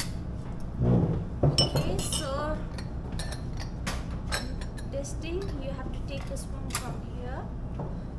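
Ceramic tea-tasting cups, lids and bowls clinking against each other and against a metal spoon as they are handled, a string of sharp clinks that is loudest between one and two seconds in.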